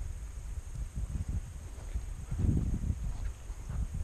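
Wind buffeting the camera's microphone: an uneven low rumble, a little stronger about two and a half seconds in.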